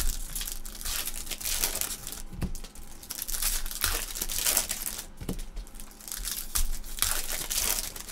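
Foil trading-card pack wrappers crinkling as packs are torn open and handled, in a run of rustling bursts with a few sharp clicks.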